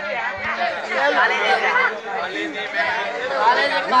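Chatter of several voices talking and calling over one another, with no pause.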